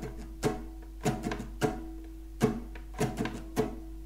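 Acoustic guitar strummed with a pick-free hand in the song's strumming pattern, about nine down and up strokes in an uneven, repeating rhythm, the chord ringing on between strokes.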